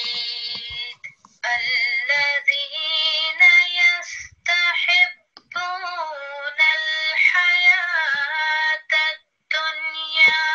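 A woman's recorded Quran recitation (tarteel) played back: a slow, melodic chant with long drawn-out vowels and short pauses for breath. The length of a prolonged vowel in it is being checked, and is judged an acceptable length.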